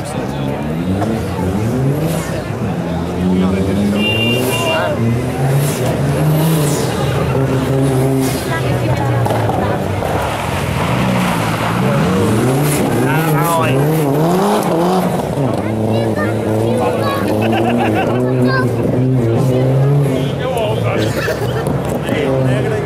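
Mitsubishi Lancer Evolution's turbocharged four-cylinder engine revving hard and dropping back again and again as the car is thrown through tight turns on a dirt course.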